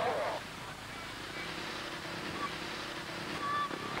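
Steady rushing background noise with a faint low hum, with no clear events.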